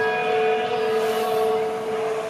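A single church bell stroke ringing on: a steady low hum with several higher overtones, slowly fading.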